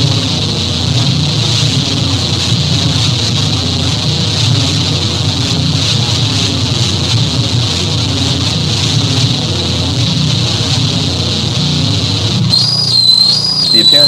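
A dense, steady wash of noise with a thin high whistling tone held through it. About twelve and a half seconds in it gives way to a high tone that warbles up and down.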